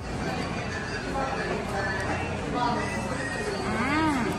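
Background hubbub of a busy eatery: indistinct voices and clatter. Near the end comes one short voiced sound that rises and then falls in pitch.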